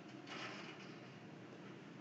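Near silence: faint room hiss, with a brief soft rush of noise about a quarter of a second in.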